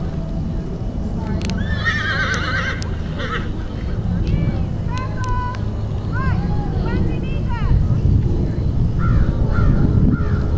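A horse whinnies about a second and a half in, a wavering call lasting about a second. Several short rising-and-falling calls follow over the next few seconds, over a steady low rumble.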